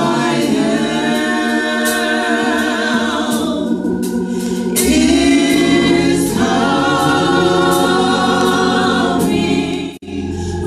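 Gospel praise team singing in harmony through handheld microphones, several voices holding long notes with vibrato. The phrases break briefly about four seconds in and again near the end.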